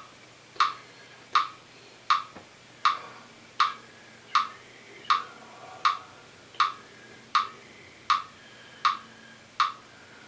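Metronome clicking steadily at 80 beats per minute, one click every three-quarters of a second, all clicks alike.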